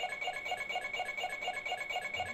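Lie-detector alarm going off: rapid electronic beeping, about four beeps a second over a steady high tone, signalling a lie.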